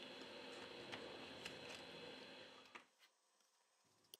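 Near silence: a faint background hiss with a couple of tiny ticks, then dead silence near the end.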